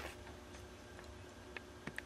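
Quiet shop room tone with a low steady hum, broken by a few small, sharp clicks near the end.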